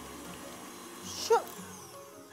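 Tilt-head stand mixer running steadily at top speed, its wire whisk beating choux pastry dough in a glass bowl.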